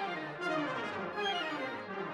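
Background orchestral music led by brass, a melody in several moving parts.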